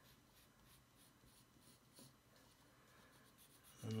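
Faint scratching of a graphite pencil on paper as short strokes go over a sketch's outline, with a light click about halfway through.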